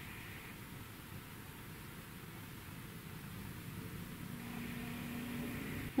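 Quiet room tone: a steady faint hiss, with a faint low hum coming in during the last second or two.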